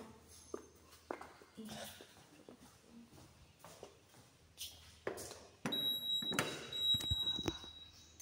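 Soft footsteps and knocks, then a little over five seconds in a lift's electronic signal starts: one steady high beep lasting about two seconds, with a few sharp knocks of the lift's doors or fittings over it.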